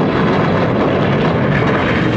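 A television drama's sound effect: a loud, steady roaring rush of wind.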